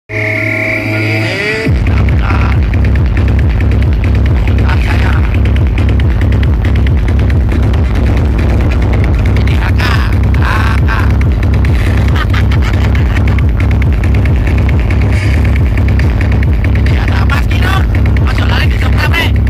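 Loud, bass-heavy electronic music played through towering outdoor sound-system speaker stacks, with a steady booming beat. A brief tonal intro passage comes before the bass starts, about a second and a half in.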